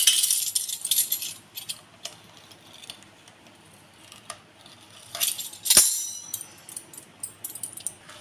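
Small clicks and rustles of hands and a metal pastry-cutting wheel working dough on a wooden board, with one sharp clink about six seconds in.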